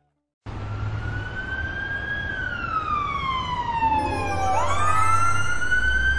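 An emergency vehicle siren wailing over a low rumble. Its pitch climbs slowly, falls over about two seconds, then sweeps quickly back up. It cuts in abruptly after half a second of silence.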